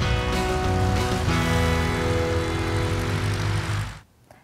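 Segment-intro music sting: sustained chords over a heavy low bass, with a chord change about a second in. It fades out at the very end.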